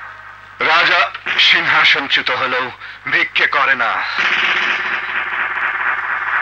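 A man speaking film dialogue, with a steady hiss taking over about four seconds in.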